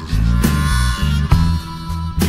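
Blues band playing an instrumental passage between sung lines: a bass line and drum beats under a sustained harmonica line.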